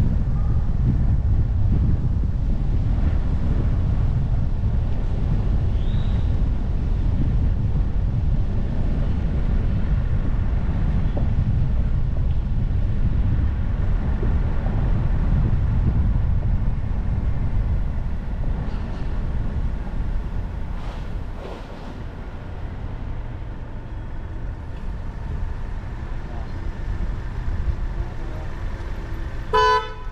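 Steady low rumble of road and wind noise from a car driving through city streets, dropping in level about two-thirds of the way through. Just before the end, a car horn gives one short toot.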